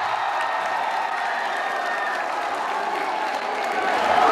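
Audience applauding, a steady patter of many hands clapping with crowd noise under it.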